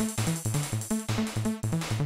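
Synthesized electronic music from a 4-kilobyte demoscene intro: a synth bassline pulsing about four notes a second over a steady beat.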